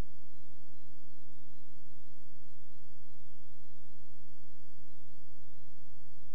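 Steady electrical hum with hiss, with a faint high whine wavering up and down in pitch.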